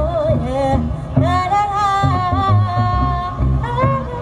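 Woman singing a reggae song live into a microphone over a band with a bass line; she holds one long note in the middle.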